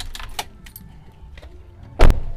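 Car keys jangling in a hand, a scatter of light irregular clicks and rattles, then the Toyota Rush's door shutting with a heavy thump right at the end.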